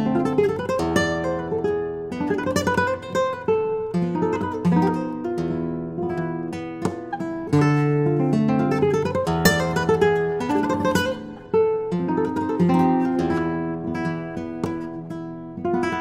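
Conde Atocha flamenco blanca guitar (spruce top, cypress back and sides) played solo with the fingers: a flowing flamenco passage of plucked melody notes and chords, with sharp strummed strokes now and then.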